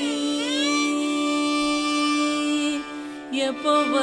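Male Carnatic vocalist holding one long note for about two and a half seconds over a steady drone, then picking up again near the end with wavering, ornamented phrases.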